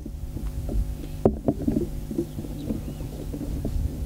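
Steady electrical hum from a public-address system, with an uneven low rumble underneath and a single sharp click about a second in.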